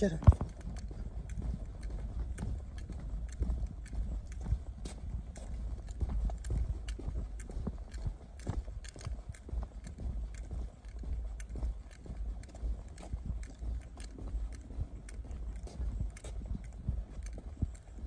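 Footsteps of a person walking at a steady pace on a concrete path, about two steps a second, over a steady low rumble.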